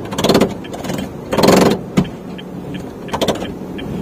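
Honda Brio front seat being slid on its rails, making a few short rattling scrapes about a second apart and one sharp click about two seconds in. It sounds somewhat odd or cheap.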